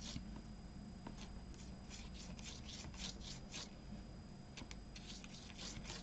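Soft, faint swishes of a wide, round-tipped gold taklon brush stroked across embossed watercolour card, laying down a wet ink wash. The strokes come in short runs, one in the middle and another near the end.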